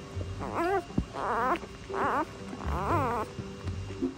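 Newborn puppies whimpering while nursing: about four short, high, wavering cries, over steady background music.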